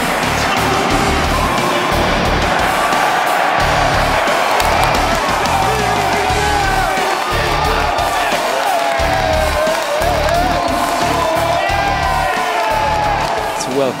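Background rock music with a steady beat, mixed with a stadium crowd cheering.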